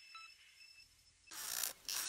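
Near silence as the last faint tones of music die away, then two short bursts of scraping noise about a second and a half in and just before the end.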